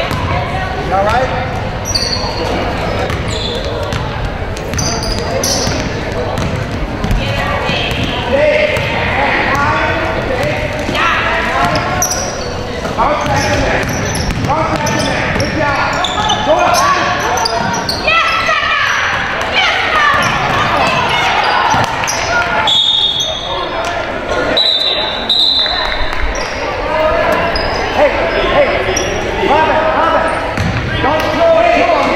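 Basketball game sound in an echoing gymnasium: a basketball bouncing on the hardwood floor amid players' and spectators' voices calling out and talking throughout, with a few short high-pitched tones a little past the middle.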